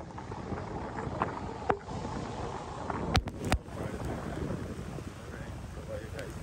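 Wind buffeting the microphone over the steady wash of surf on a beach. Two sharp knocks come about three seconds in, a third of a second apart.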